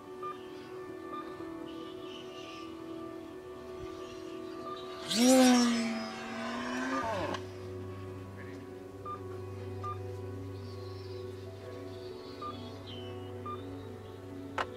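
An F5B electric racing glider passing at speed during its lap run: a loud rush of air with a rising whine, about five seconds in, lasting about two seconds. Faint short beeps sound a few times, likely base-crossing signals, over steady background tones.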